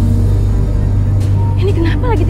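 Motor scooter engine running with a steady low hum.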